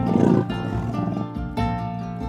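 A leopard giving one short growl, about half a second long, right at the start, over steady plucked-string background music.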